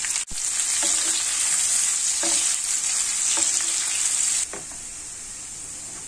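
Sliced onions frying in hot ghee in a non-stick pan: a steady, loud sizzle with some stirring. The sizzle drops abruptly to a quieter level about four and a half seconds in.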